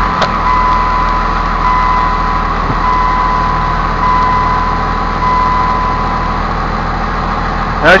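Dodge Ram's Cummins inline-six diesel idling steadily just after a cold start, heard from inside the cab, with a steady whine over the idle.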